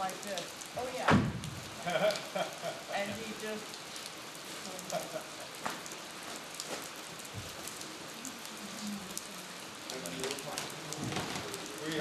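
Steady rain falling, with many small drop hits, and one loud thump about a second in.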